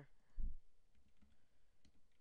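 A few computer mouse clicks, typing letters on an on-screen keyboard, with a dull thump about half a second in as the loudest sound.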